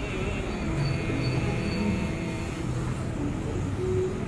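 A steady low rumble of background noise, with faint held tones through the first half.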